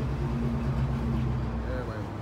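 Steady low mechanical hum with a few even low tones, with faint voices in the background; the hum drops away at the end.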